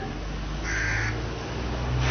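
A single harsh bird call, about half a second long, a little under a second in, over a steady low hum.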